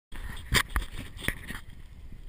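Handling noise from an action camera being touched by a finger: three sharp knocks within about a second, with rubbing between them, dying down shortly before the end, over a steady low rumble.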